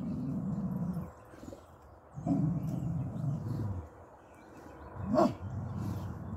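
A hound dog grumbling and bay-barking in three long, low, rumbling stretches, with a short, sharper bark just before the last one. It is the dog's wary complaint at something unfamiliar in the yard.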